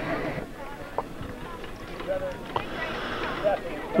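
Background voices of people talking at a distance, loudest in the first half second and then faint and scattered, with a couple of faint knocks.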